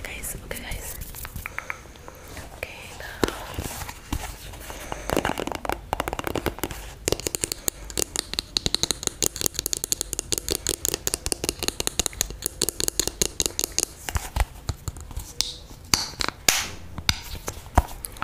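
Long fingernails tapping and scratching fast on a plastic cosmetic tube held against a foam-covered microphone, a dense run of rapid clicks for several seconds in the middle, with whispering.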